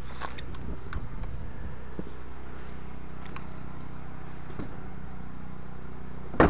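Walk-behind tractor's small engine running steadily at a low, even idle, with a few faint clicks and rustles of movement close by.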